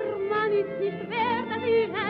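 Operetta soprano singing with a strong, quick vibrato over orchestral accompaniment, on an early-1930s gramophone recording with a narrow, dull top end.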